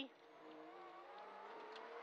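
Rally car's engine heard faintly inside the cabin, its note rising slowly as the car accelerates along a straight.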